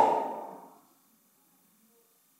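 The end of a man's long, loud shout: its pitch drops and its echo dies away within the first second, followed by near silence.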